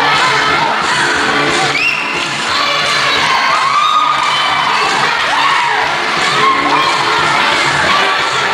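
A crowd of women shouting and cheering, with short rising whoops, over dance music with a steady beat.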